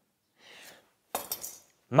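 Metal measuring tools being handled on a board: a faint slide, then a short run of light metallic clinks about a second in as a tool is set down.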